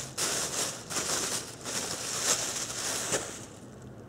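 Rustling with several light knocks as a pump bottle of hand soap and other shopping items are handled, dying down in the last second.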